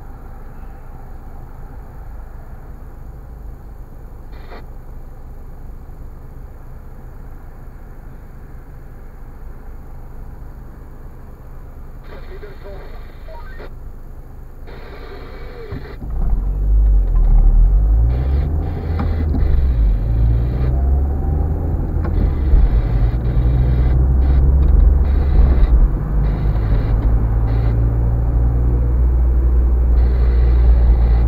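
Car heard from inside its cabin: a low, quiet engine rumble while stopped, then about halfway through the car pulls away and the engine and road rumble becomes much louder and stays so.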